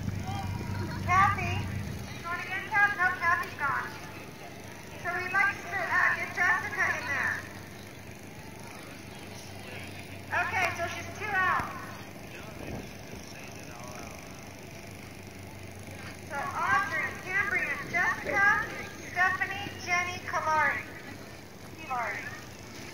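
Indistinct voices in several short bursts, with no words that can be made out.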